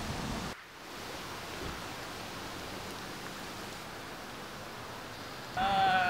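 A steady, even hiss of background noise that follows a sudden drop in level about half a second in. Near the end a high, wavering voice starts up.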